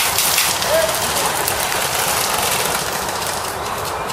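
Airsoft guns firing in rattling bursts over a steady rushing noise, with a short voice call about a second in.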